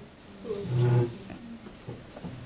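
A brief, low human hum or murmur lasting about half a second, starting about half a second in, against faint room tone.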